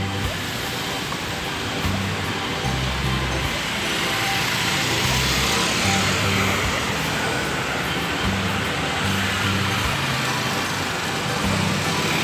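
Road traffic on a city street, cars driving past with a steady tyre-and-engine noise that swells around the middle, under background music with a repeating bass line.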